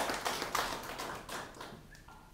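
Clapping from a small group of people, a quick irregular patter of hand claps that thins out and dies away near the end.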